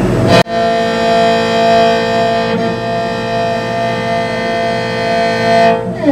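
Morin khuur (Mongolian horse-head fiddle) bowed: one long, steady note starting about half a second in and held for about five seconds.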